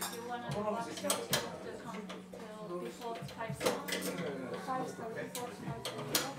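Sharp metallic clicks and clinks from a hand-worked ring engraving machine, over quiet voices talking and a low steady hum.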